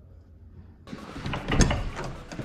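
A door being opened: after a quiet start, a sudden clatter about a second in, with a loud knock halfway through.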